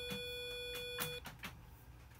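Arduino's small speaker holding one steady, buzzy electronic tone, stuck on because the default case's noTone() call is commented out, so the last button's note never stops. It cuts off suddenly a little over a second in, as the corrected sketch is uploaded, followed by a few light clicks.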